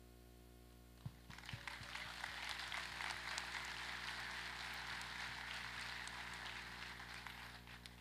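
Audience applauding, starting about a second in, holding steady and fading out just before the end.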